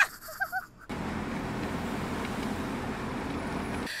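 A brief faint voice at the start, then about three seconds of steady low ambient rumble, a traffic-like background that cuts off just before speech returns.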